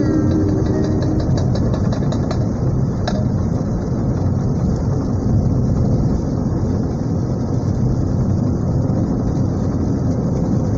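Road noise inside a Honda car driving on an unpaved dirt road: a steady, loud rumble of tyres and suspension on the rough surface, with a quick run of small clicks and rattles about two to three seconds in.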